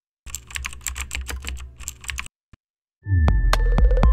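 Keyboard typing sound effect, a quick run of key clicks over a low synth drone for about two seconds, then a single click. About three seconds in, a loud deep bass hit with a falling tone and sharp clicks opens a musical logo sting.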